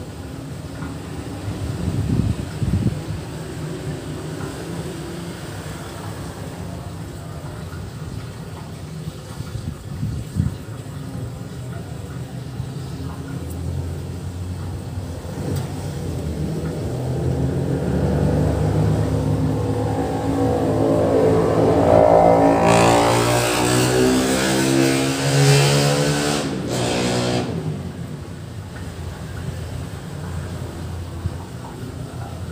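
A motor vehicle passes close by. Its engine grows louder over several seconds in the second half and fades away near the end, over a steady low background hum.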